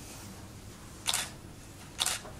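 Press camera shutters firing: two quick shutter clicks, one about a second in and another at the very end.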